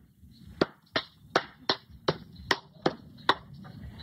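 A run of sharp chopping blows, about two a second and slightly uneven, played back from a video over the studio's speakers.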